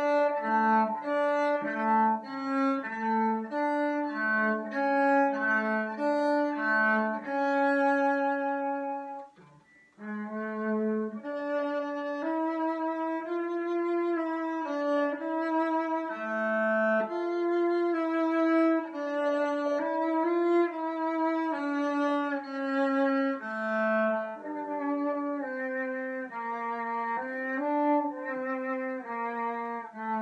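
Solo cello bowed through a slow melodic passage, practised under tempo with attention to dynamics. There is a brief break about a third of the way in before the playing resumes.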